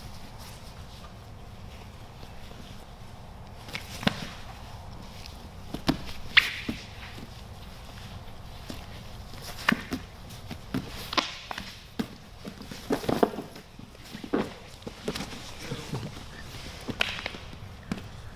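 Two grapplers rolling on foam mats: scattered, irregular soft thuds, slaps and scuffs of hands, feet and bodies on the mat, starting about four seconds in.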